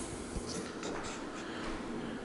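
Faint scratchy rustling and scuffing of a handheld camera being carried while the person holding it walks through an empty, unfurnished room, with a soft click about a third of a second in.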